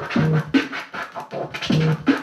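Turntablist scratching a vinyl record on a turntable through a DJ mixer: a quick run of short back-and-forth strokes of a sample under the needle.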